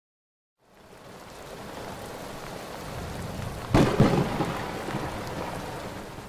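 Steady rain fading in, then a sharp crack of thunder just under four seconds in, quickly followed by a second crack, with the thunder rumbling away under the continuing rain.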